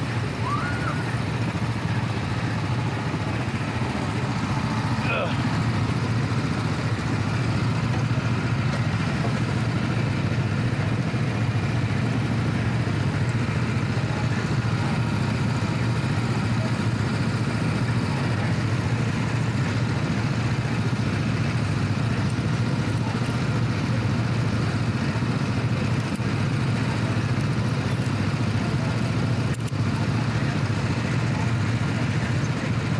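Go-kart engines idling steadily in the pit lane, a continuous low drone.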